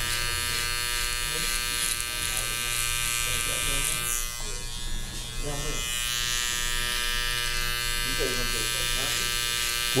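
Cordless electric beard trimmer buzzing steadily as it is run along the neckline of a full beard, shaping it. The buzz eases briefly about halfway through.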